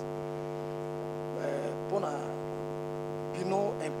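Steady electrical mains hum, a low buzz with many evenly spaced overtones, running under the recording. Brief snatches of speech come through near the middle and near the end.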